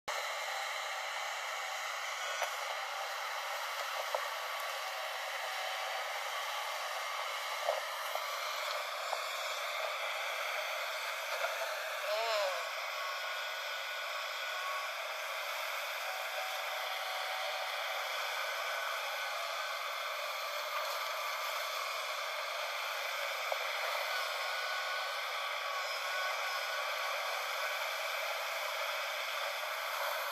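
Tracked JCB excavator running steadily while it digs wet mud, a constant engine and hydraulic drone with a few light clanks in the first several seconds. The sound is thin, with no low rumble.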